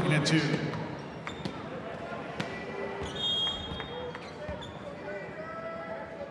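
A ball bouncing a few times on a hardwood gym floor, sharp separate thuds with the clearest about two and a half seconds in, echoing in a large hall. Voices carry across the gym, loud at first and fading within the first second, with scattered shouts later.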